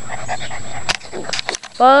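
Six-week-old Newfoundland puppy panting close to the microphone, followed by a few short clicks about a second in.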